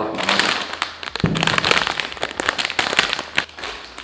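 Crinkly chip bag rustling and crackling as it is handled and a hand rummages inside it: dense, irregular crackling throughout.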